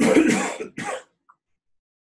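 A person coughing twice in about a second, the first cough longer and louder than the second.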